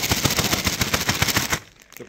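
A bag of Doritos tortilla chips being shaken hard: a fast, loud rattle of chips against the crinkly bag that stops suddenly about one and a half seconds in. It is done to spread the cheese seasoning over the chips.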